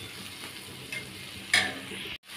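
Sliced onions and green chillies sizzling in oil on a tawa, stirred with a steel spatula that scrapes across the pan, with a louder spatula stroke about a second and a half in.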